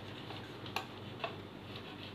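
Marker pen writing on a whiteboard: a few short ticks and taps as the tip strikes and lifts off the board, about half a second apart, over a low hiss.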